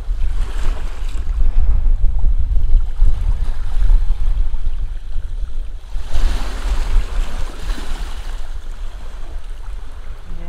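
Small sea waves lapping over sand and mossy rocks at the water's edge, with a strong low rumble of wind on the microphone. A wave washes in more loudly about six seconds in.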